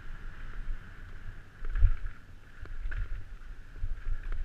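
Downhill mountain bike running fast over a dirt trail, heard from a helmet-mounted camera: steady rumble and hiss from wind and tyres, broken by sharp knocks and rattles as the bike hits bumps, the loudest thump about two seconds in.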